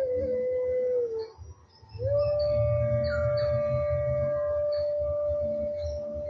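Meditation background music: a long held melodic tone that slides down and breaks off about a second in, then swoops back up and holds one pitch, over a low drone with faint high tinkling notes.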